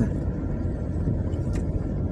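Steady low rumble of a car's engine and tyres on the road, heard from inside the cabin while driving uphill.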